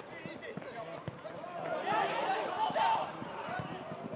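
Men shouting during a football match, their voices peaking about two to three seconds in, with a few short thuds of the football being kicked.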